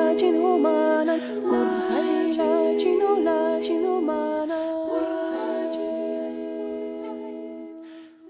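Women's a cappella vocal trio humming in close harmony: one ornamented, moving melody over long held notes in the other voices. The voices fade out gradually toward the end.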